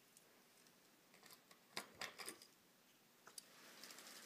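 Faint, scattered light clicks of small toy cars knocking against each other as a child handles them, a few sharp ones clustered in the middle.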